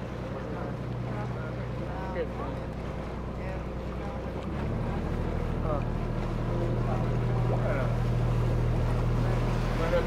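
A canal tour boat's motor runs steadily as the boat moves along the canal. About halfway through, its note shifts and grows a little louder. Faint voices are heard in the background.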